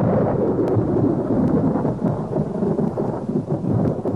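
Cartoon sound effect of thunder: a sudden clap that rolls on as a steady, heavy rumble and dies away near the end.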